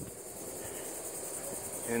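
Steady high-pitched chorus of insects chirring, with a faint even pulsing.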